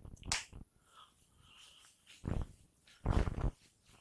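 A whiteboard being wiped with a duster: faint, short rubbing strokes about two seconds in and again about three seconds in.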